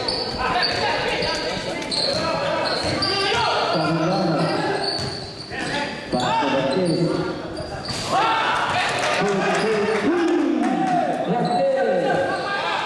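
Indoor basketball game: players and spectators shouting over each other with a basketball bouncing on the court, all echoing in a large hall.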